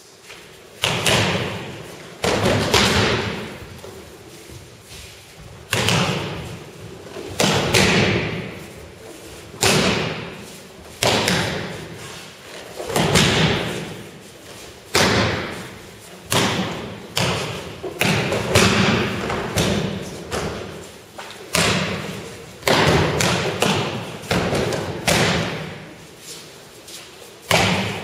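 Bodies slamming onto tatami mats in aikido breakfalls as partners are thrown, a loud thud every second or two, each echoing briefly in the large hall.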